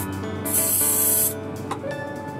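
Airbrush spraying paint in one short hiss, starting about half a second in and lasting just under a second, as a base coat is laid on a plastic model aircraft.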